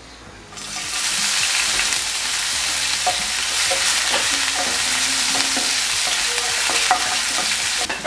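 Chopped ginger and garlic hitting hot oil in a nonstick pan: the sizzling starts suddenly about half a second in and goes on as a steady hiss while they are stirred with a spatula, with a few light knocks.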